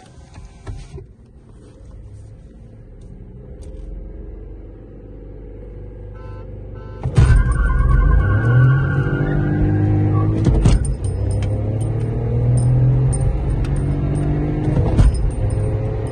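Inside the cabin of a Stage 1 tuned Volkswagen Vento TSI: a low rumble for the first several seconds, then about seven seconds in the engine goes to full throttle, its note climbing. About three seconds later there is a short break for an upshift, and then the note climbs again.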